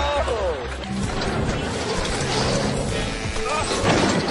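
Background music with people's voices over it in the first half-second.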